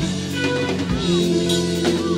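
Live jazz-fusion band playing an instrumental: electric guitar holding long sustained notes over a drum kit, with a gliding guitar note and a drum hit about a second in and another hit near the end.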